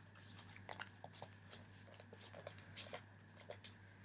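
Near silence: room tone with faint, irregular small clicks.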